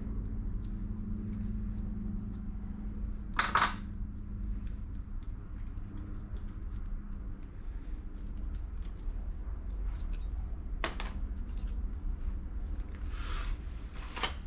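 Light metallic clicks and clinks of hand tools and small steel parts at the front of a Ford crossflow engine block as the camshaft thrust plate is taken off. There are sharper clanks about three and a half seconds in, the loudest, and again about eleven seconds in, over a steady low hum.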